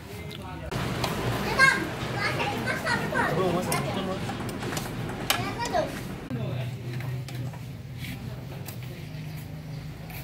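Several voices, children among them, talking and playing in the background, with a few sharp clicks mixed in. After about six seconds the voices fade, leaving a steady low hum.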